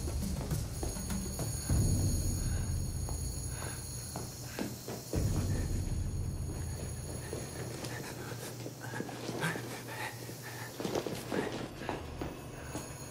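Film soundtrack: a low, rumbling music score with two heavy booming hits about two and five seconds in, slowly dying away. Scattered short knocks and scuffles come near the end.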